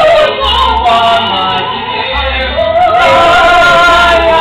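Voices singing a musical-theatre number live on stage, holding long notes with a wavering vibrato.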